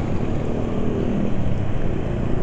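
Motorcycle engine running steadily at low riding speed, with wind rumbling on the on-board microphone. The rider calls the engine sound rough on this oil and suspects the oil is too thin for his motorcycle.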